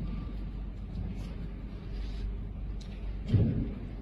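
Steady low rumble of a large hall with faint crowd murmur, and one dull thud a little over three seconds in.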